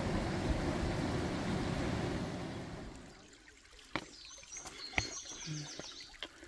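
A steady rushing hiss of outdoor noise that fades away about halfway through, leaving quiet creekside ambience with a couple of sharp clicks and a small bird chirping high near the end.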